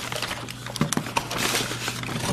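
Cardboard McNuggets boxes and sauce packets being handled and opened on a stone countertop: light rustling with scattered taps and clicks, over a faint steady hum.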